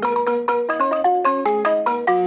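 Two balafons, West African wooden-keyed xylophones with calabash gourd resonators, played together with mallets in a fast, even stream of short ringing notes.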